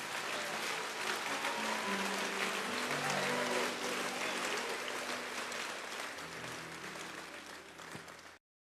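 Church congregation applauding, with held low instrumental chords underneath; the applause fades away over the last few seconds.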